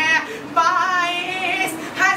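A young man's high voice singing an Urdu manqabat (devotional verse for Imam Hussain) unaccompanied, in long, wavering held notes with a brief break for breath near the start.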